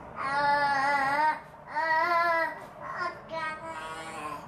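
A baby's drawn-out vocalizing: two long, pitched calls of about a second each, then a few shorter ones near the end.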